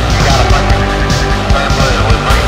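Loud live electronic music: synthesizers over a steady, driving low beat, with short gliding synth tones sliding up and down through the middle range.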